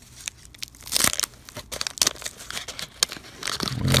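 Wax-paper wrapper of a 1987 Topps baseball card pack being torn open and crinkled by hand, in sharp irregular crackles that are loudest about a second in and again at two seconds.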